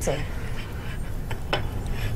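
Light rubbing and a couple of soft clicks from hands salting a raw burger patty on a plate, over a steady low hum of room tone.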